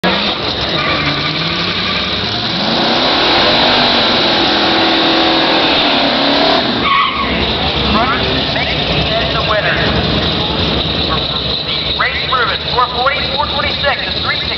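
Drag-racing Dodge Challenger's engine revving, its pitch climbing steadily for several seconds before dropping off sharply about seven seconds in. After that the engine runs rougher at the line while a person's voice talks over it.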